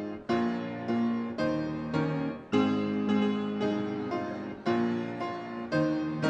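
Piano playing slow chords, each struck and left to fade, a new chord about every half second to second.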